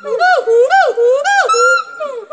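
Hoolock gibbon calling: a fast series of loud whooping notes, each rising then falling in pitch, about three a second.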